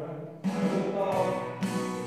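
Small praise band playing an instrumental passage on violin and guitars, with no singing. The music grows fuller and louder about half a second in.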